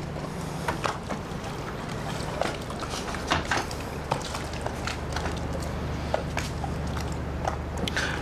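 Steady low hum of the steel motor yacht's machinery running below deck, with a few faint light knocks and clicks scattered through it.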